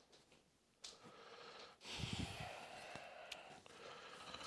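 A man breathing close to the microphone: a short sniff about a second in, then a long breath out from about two seconds in, with some rustle of the camera being handled.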